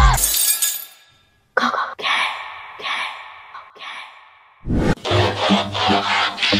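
Glass-shattering sound effect: a sudden crash about a second and a half in, followed by several smaller crashes that trail off. Near the end a low hit brings in electronic music with a steady bass beat.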